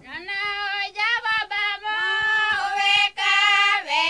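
Kaiapó chant sung in a high voice. The pitch slides upward at the opening of the phrase, and the phrases are broken by short gaps.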